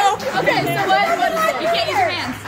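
Only speech: several voices chattering over one another.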